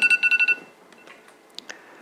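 An electronic beeper going off: a rapid run of high, pulsing beeps, about ten a second, lasting about half a second at the start, then stopping. A couple of faint clicks follow near the end.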